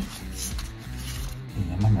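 Stiff transparent plastic playing cards clicking and rubbing against each other as they are leafed through by hand, over steady background music.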